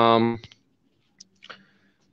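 A man's voice trailing off on a drawn-out syllable, then a pause holding two faint, short clicks about a second and a half in.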